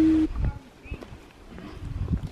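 A drawn-out, wavering groan from a person, loud and low-pitched, that cuts off abruptly a quarter second in. Then quiet outdoor sound with a few soft footsteps on a paved road and a brief high chirp about a second in.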